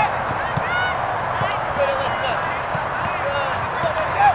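Birds calling with many short honking calls, each rising and falling in pitch, over a steady outdoor background.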